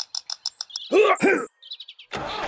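A quick run of short, high bird-like chirps, then two short, arching, high-pitched calls about a second in, and a few faint chirps near the end.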